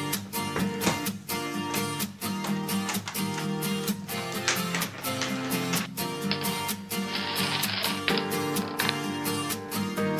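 Background music: strummed acoustic guitar over a steady beat.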